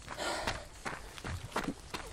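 Footsteps of a trail runner on a dirt track, a series of short scuffs about every half second, with a breath out about a quarter second in.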